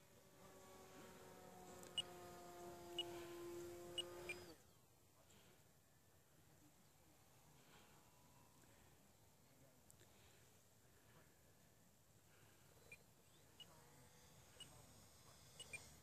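Radio-controlled model airplane's motor, a faint steady hum rising slightly in pitch, which cuts off suddenly about four and a half seconds in. Faint scattered ticks follow.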